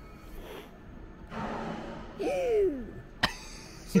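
A person's cough about two seconds in: a short noisy burst ending in a voiced sound that rises and falls. A sharp click follows near the end.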